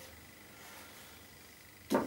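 Quiet room tone, broken just before the end by a single short, sharp click.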